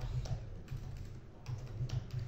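Typing on a computer keyboard: a few light, scattered key presses entering a password, quiet over a low background hum.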